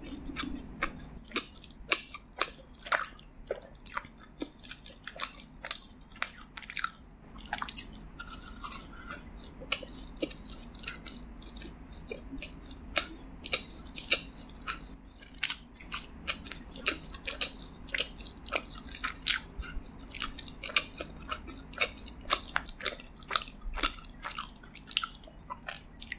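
Close-miked chewing of a bacon maple long john donut: a steady run of sharp, irregular clicks and crunches as the bite is worked in the mouth.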